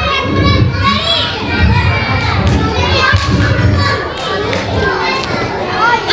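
Many children's voices at once, chattering and calling out over one another in a large hall.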